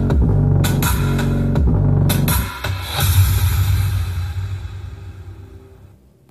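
Music with heavy bass and a drum beat played loud through a Polytron PAS 68-B active speaker, a test run after its power supply was modified. About two seconds in the drums drop away and the music fades down.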